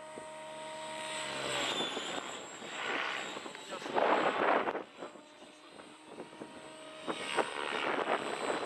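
Radio-controlled model helicopter's rotor and motor running, a steady stack of tones that drops in pitch about a second and a half in and returns faintly near the end. Louder bursts of rushing noise come and go over it, the loudest about four seconds in.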